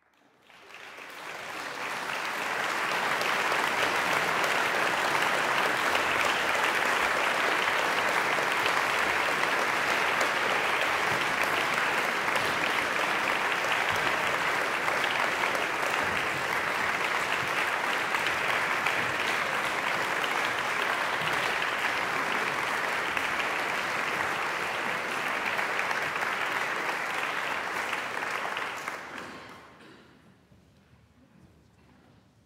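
Audience applauding steadily as the performers come on stage. The applause builds over the first couple of seconds and fades out near the end.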